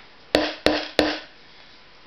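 Hammer driving a small, thin nail: three quick blows about a third of a second apart, each with a short metallic ring, after which the hammering stops about a second in.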